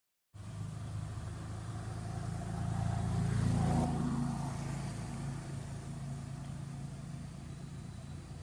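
Low engine hum of a motor vehicle, swelling as it passes to its loudest about halfway through, then fading back to a steady drone.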